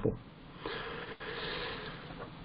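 A man breathing in: a soft, steady hiss of breath lasting about a second and a half, starting about half a second in.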